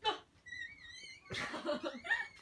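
People laughing: a high, wavering giggle, then fuller, louder laughter in the second half.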